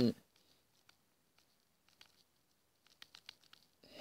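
Near silence with a few faint clicks of a stylus on a tablet screen as handwriting is added: one tick about two seconds in, then a quick cluster of them in the second half.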